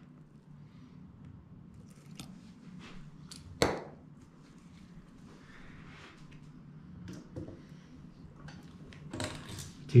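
Small metal clicks and scrapes from an orthopaedic depth gauge being worked in and withdrawn from a screw hole in a steel bone plate on a model femur, with one sharper metallic click about three and a half seconds in.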